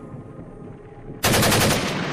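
Machine-gun sound effect: a short, rapid burst of automatic fire that starts suddenly about a second and a quarter in and dies away slowly in an echoing tail.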